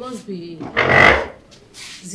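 A woman's voice making short wordless sounds, then a louder noisy burst about a second in and a fainter one near the end.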